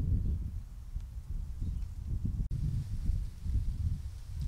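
Low, uneven rumble of wind buffeting the microphone, with a short break about halfway through.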